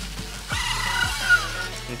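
A tissue wiped along the steel strings of an acoustic guitar: a scraping hiss with a faint squeak, from about half a second in. It sits over background music with a steady bass.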